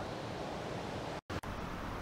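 Steady, faint rushing of a river flowing through a wooded gorge, an even hiss with no distinct events. It drops out briefly about a second in and then resumes.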